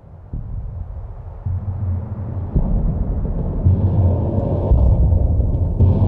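Deep, low cinematic rumble that swells louder in several steps, with a rising hiss spreading above it.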